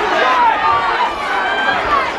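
Ringside crowd of many overlapping voices shouting during a boxing bout.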